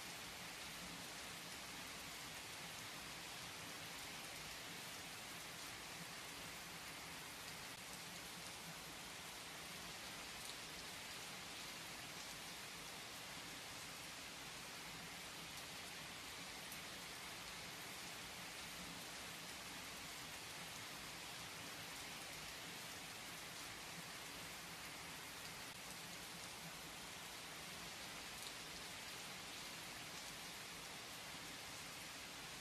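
Rain falling steadily: an even hiss with a scattering of slightly louder single drops.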